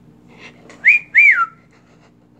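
A person whistling two short notes in quick succession, the second rising and then sliding down.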